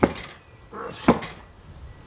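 Two chops of a Cold Steel hawk into a padded office chair: sharp knocks about a second apart.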